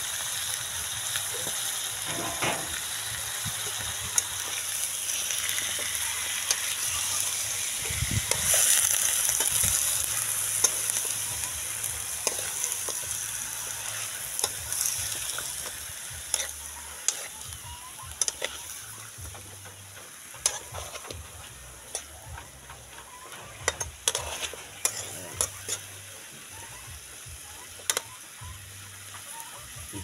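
Cut-up chicken, feet included, sizzling in a hot wok over a wood fire. The sizzle is loudest about eight to ten seconds in and fades over the second half, with scattered sharp clicks and knocks as the pieces are stirred and turned.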